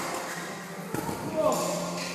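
Voices of people talking in a hall, with a single knock about a second in.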